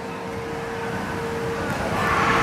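A steady machine hum with a rushing noise behind it, the hum fading out near the end.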